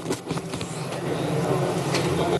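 Rumbling background noise of a legislative chamber, a dense low hubbub picked up by the open floor microphones, growing louder.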